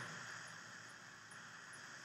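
Faint steady hiss of room tone and microphone noise in a pause between words.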